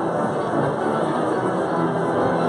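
Pipe organ playing steadily, many held notes sounding together without a break.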